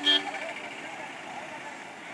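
Busy street ambience: many people talking at once over traffic noise, with a short, loud honk right at the start.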